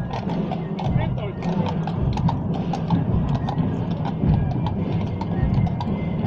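Hooves of harnessed draft horses clip-clopping on cobblestones as they pull a carriage past, in quick irregular strikes, over crowd voices and music.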